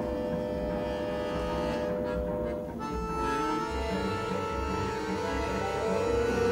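Opera orchestra playing a slow passage of long held notes in a contemporary score; the chord shifts to new sustained notes about three seconds in.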